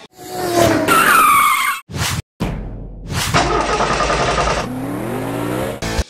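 Car sound effects spliced together: tyres screeching, then an engine revving up, with abrupt cuts and a brief gap between the pieces.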